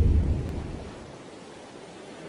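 A deep rumble swells to a peak and fades away within about a second, leaving a steady wash of wind and water noise.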